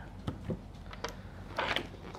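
Quiet handling noise as small accessories are set down and a helmet is picked up: a couple of faint clicks, then a brief scuff about a second and a half in.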